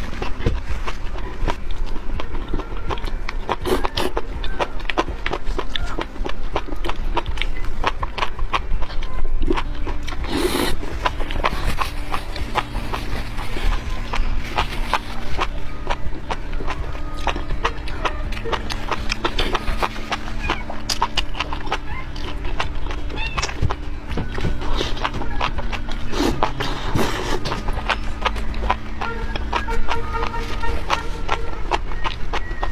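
Chewing and slurping of chili-oil-soaked enoki mushrooms, with many quick wet clicks, over background music that holds low notes.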